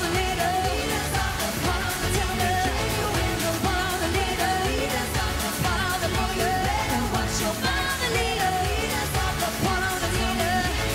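Upbeat pop song: female vocals over a steady dance beat.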